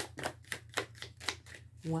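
A deck of oracle cards being shuffled by hand, the cards clicking against each other about four times a second.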